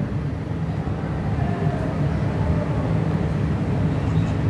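A steady low background rumble, with a faint higher tone drifting through the middle.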